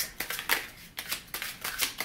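A deck of oracle cards being shuffled by hand: a run of quick, irregular papery flicks and clicks.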